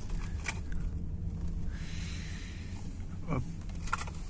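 Steady low rumble inside a car's cabin as it rolls slowly, with a single light click about half a second in.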